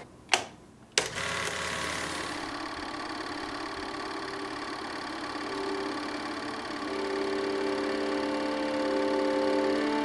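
Two switch clicks, then about a second in a film projector starts running steadily. From about halfway through, music with long held notes comes in over it and grows louder.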